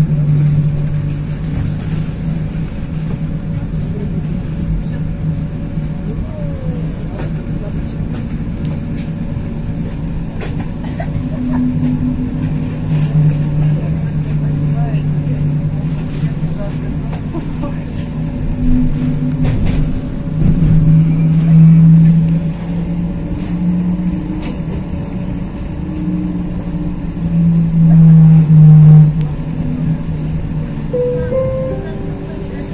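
Interior of a moving Pesa Fokstrot 71-414 low-floor tram: a steady low hum that swells and fades several times over a continuous rolling rumble, with scattered clicks and knocks.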